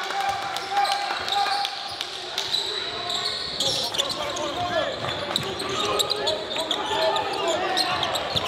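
Live basketball gym sound on a hardwood court: a ball dribbling, sharp thuds and sneakers squeaking. Players and spectators call out over it, echoing in a large hall.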